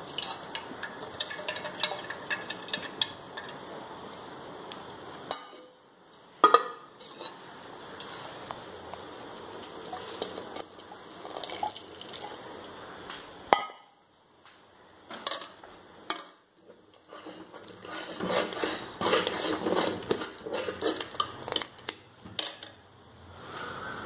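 Metal ladle scraping and clinking against an aluminium cooking pot as a thick milky mixture is stirred, with a few sharp knocks of metal on metal.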